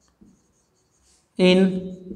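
Marker pen writing on a whiteboard: faint, short scratchy strokes through the first second and a half. A man's voice then says one word near the end.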